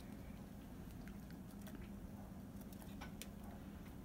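Faint handling of a raw duck as onion chunks are pushed into its cavity by hand: a few soft, scattered clicks and squishes over a steady low hum.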